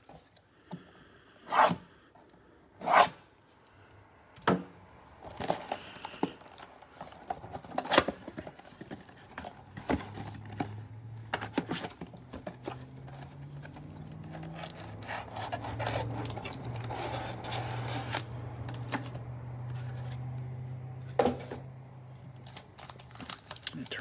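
Plastic shrink-wrap being torn off a trading-card box, then the cardboard box handled and opened. Two sharp rips come early, followed by a long run of crinkling, scraping and small clicks.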